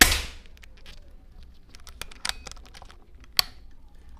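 Air rifle firing a slug: one sharp report right at the start with a short tail. A few lighter clicks follow about two seconds in, then one sharp click near the end.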